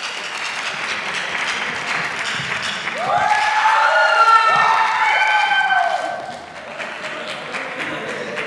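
Audience applauding, with a few rising-and-falling cheers over the clapping in the middle, when it is loudest.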